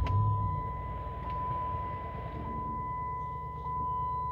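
The 2010 Dodge Challenger SRT8's 6.1-litre Hemi V8 starting: a brief surge as it catches right away, then settling into a steady low idle. A steady high electronic chime tone sounds over it.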